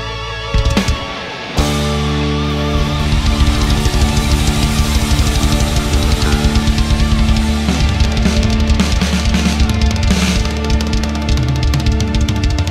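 Heavy metal band recording of drums, guitars and electric bass, with the bass played along live. The band drops out briefly about half a second in, comes back about a second later, and fast, dense drumming drives the rest.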